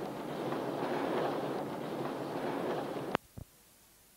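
Steady outdoor rush of wind noise from a clip filmed aboard a boat. It cuts off abruptly with a click about three seconds in, followed by a second short click, then near silence.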